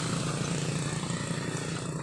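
A motor vehicle engine running on the road, a steady drone that slowly fades as it moves away.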